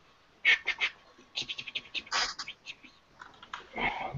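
Typing on a computer keyboard: a few sharp key clicks, then a quick irregular run of keystrokes, then a few more scattered taps.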